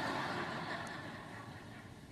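Audience laughter in a large hall, a diffuse wash of many people that dies away over about two seconds.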